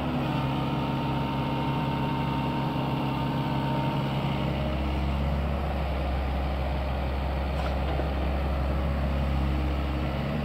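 SANY SY75C mini excavator's diesel engine running steadily while the machine digs and swings, its low engine note growing fuller about halfway through.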